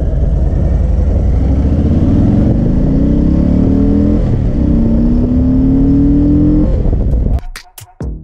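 Harley-Davidson V-twin motorcycle engine accelerating under way, its pitch climbing, dipping briefly at a gear change about four seconds in, then climbing again. Near the end the engine sound cuts off abruptly and electronic music with a drum-machine beat starts.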